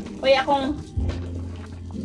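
A short voiced exclamation just after the start, over a low steady background hum.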